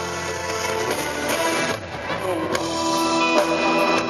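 Live band music: sustained keyboard chords over a steady low bass, the chord changing a little past halfway, with a few light percussive hits.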